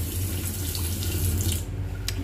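Water running from a chrome bathroom-sink tap into the basin, then turned off shortly before the end.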